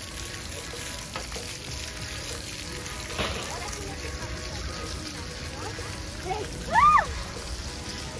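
Splash-pad water jets spraying and pattering on the wet ground with a steady hiss. A child gives a short high call about seven seconds in.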